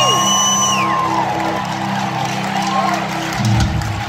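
Live rock band music in a stadium, heard from the stands: sustained chords, with a new, fuller low chord coming in about three and a half seconds in. Crowd whistles and whoops glide up and down over the music at the start and die away within the first second.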